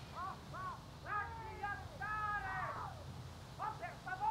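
Crows cawing in a run of calls: three short arched caws, then longer drawn-out caws about a second and two seconds in, and a quick cluster near the end.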